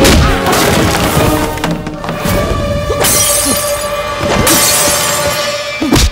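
Dramatic film score over fight sound effects: a sharp hit at the start, then glass shattering in two long stretches through the second half, as of bus window panes breaking.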